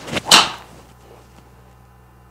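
Golf driver swung at full speed and striking the ball: a short swish, then a loud crack about a third of a second in that fades within half a second. A solidly struck drive, called "absolutely crunched".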